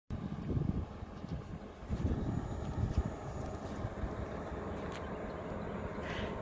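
Tracked excavator's diesel engine running, an uneven low rumble with a few louder swells.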